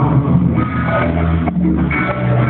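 Live rock band playing an instrumental stretch: electric guitars, bass guitar and drums, with sustained bass notes and no singing.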